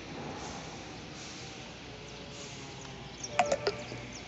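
Outdoor ambience: a steady low background noise. About three and a half seconds in, a quick cluster of sharp clicks and short chirps.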